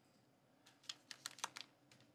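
Thin plastic wrapper crinkling in quiet, quick crackles as fingers work open a small sealed packet, starting about two-thirds of a second in.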